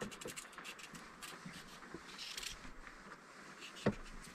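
Faint, irregular scraping and small clicks of a small kitchen knife peeling a raw carrot by hand. A sharper single knock comes just before the end.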